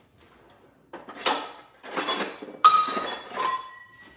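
Kitchen dishes and utensils being handled: three short bouts of clattering and clinking, starting about a second in, the last leaving a brief ringing tone.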